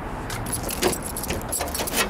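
A bunch of keys jangling, with a few short sharp clicks as a car's trunk lock is worked and the lid opened.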